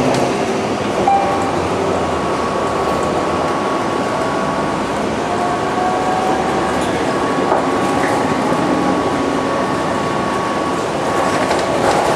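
Steady running noise heard from inside a moving transit vehicle, with a thin high whine held above it.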